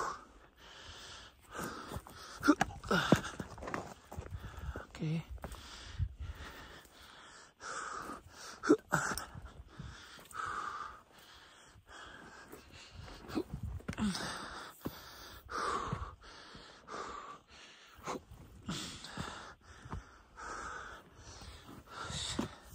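A hiker's heavy, panting breaths, a puff every second or two, as he hauls himself up a steep slope on a rope, with scattered knocks and scrapes of the climb and of the camera being handled.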